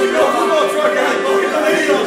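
Folk music on violin and tambura, the violin holding a long note, with people talking over it.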